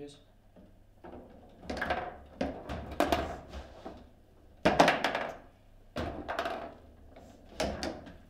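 Table football game in play: irregular sharp knocks and clacks as the plastic players strike the ball and the rods slide and bump in the table, loudest just before the halfway point.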